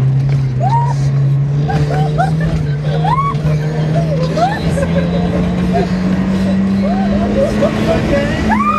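Off-road vehicle's engine running hard through the sand, its pitch climbing slowly and steadily as it drives up a dune, with short voice-like whoops and calls over it.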